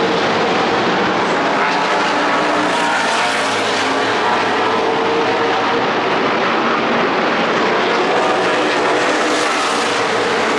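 Stock car engines running on the track, a loud, steady drone of many engines with no single car passing out of it.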